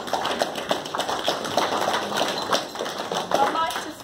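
Audience applauding, many hands clapping, with voices among the clapping.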